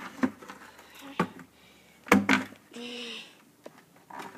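A few knocks and scuffs of a sneaker against an upturned plastic bucket, the loudest just past halfway, followed by a short strained vocal groan.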